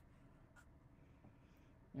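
Near silence, with a faint scratch of a felt-tip marker writing on paper.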